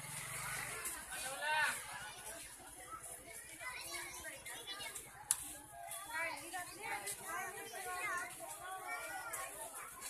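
Crowd chatter: many overlapping voices of women and children talking and calling out, some high-pitched. There is a single sharp click about five seconds in.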